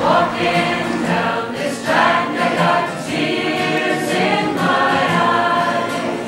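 A choir singing: several voices holding notes together in phrases.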